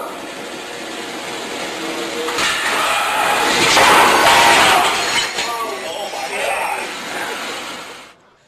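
Elevator traction machine during a failed governor-trip and brake test, heard from test footage over a hall's PA. A loud crashing, grinding noise swells to its peak about four seconds in, then dies away, with voices under it.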